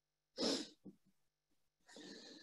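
A single short, sharp breath noise from a man, like a quick sniff or stifled sneeze, about half a second in, then a faint hiss starting near the end.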